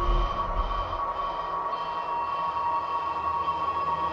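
Hard techno in a breakdown: the kick and bass fade out in the first second, leaving a steady drone of several held high synth tones with faint texture beneath.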